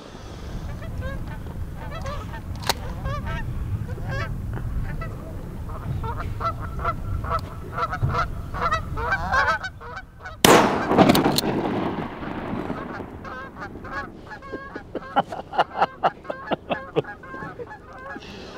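Canada geese honking repeatedly over a low rumble of wind, with a single loud shotgun shot about ten seconds in; more rapid honking follows as the geese fly off.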